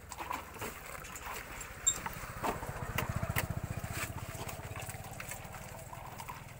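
Bananas being handled in a water-filled washing tank and set into plastic crates, with a few knocks and splashes. Under it runs a low, fast, even throb that swells about two seconds in and eases off toward the end.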